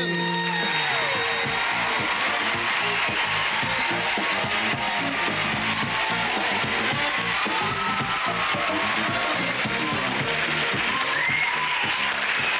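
Studio band playing walk-on music while a studio audience applauds and cheers.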